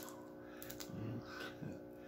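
Faint clicks of boiled crawfish shell being cracked apart by hand, over a steady low hum, with a couple of brief murmured voice sounds about a second in and near the end.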